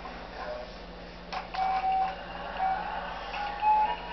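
A baby play gym's electronic toy plays a simple tune of clear beeping notes. It starts about a second and a half in, just after a click, while the infant bats at a hanging toy.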